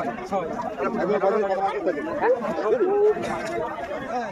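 Several people talking over one another: conversational chatter.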